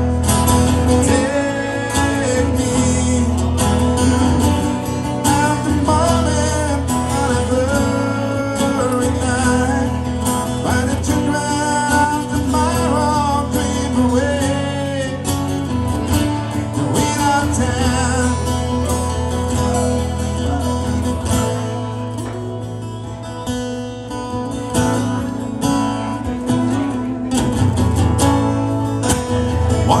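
A man singing into a microphone while strumming a steel-string acoustic guitar. The voice comes in phrases, thickest in the first half and returning near the end, and the guitar plays throughout.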